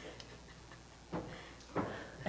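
A few light knocks and clicks of handling at a pulpit, picked up close by its microphone. The two loudest come in the second half.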